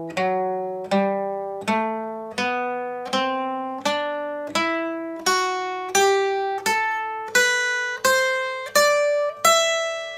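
Acoustic guitar playing an ascending three-octave E minor scale, one picked note at a time at an even slow pace of a little over one note a second, each note ringing out and climbing steadily in pitch up to a high E at the 12th fret of the first string.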